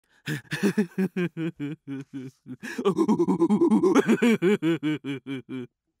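A man laughing in an exaggerated cartoon-character voice: two long runs of short, rhythmic laugh pulses, about four or five a second, with a brief break between them.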